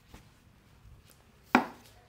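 A single sharp knock about one and a half seconds in, with a short ring-off, as a barber's tool is set down on a hard tabletop.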